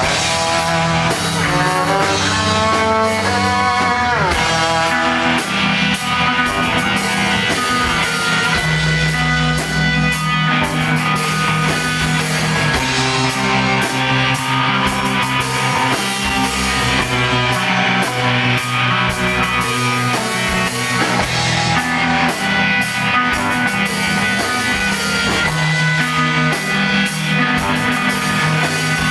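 Live rock band playing an instrumental passage with no vocals: electric guitar, bowed electric cello and drum kit, loud and steady throughout.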